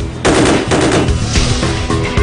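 A burst of automatic fire from an MSBS-5.56 bullpup rifle in 5.56×45 mm. It comes in loud about a quarter second in, dies down within a second, and is followed by a weaker burst, over soundtrack music.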